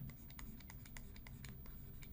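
Faint, quick clicks and taps of a stylus writing on a tablet, several to a second at uneven spacing.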